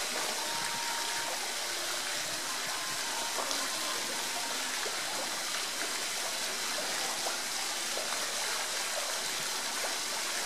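Steady rushing of running water, even and unbroken throughout.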